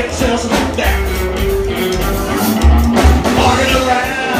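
Live rockabilly band playing: upright double bass, drum kit and hollow-body electric guitar together at a steady swing.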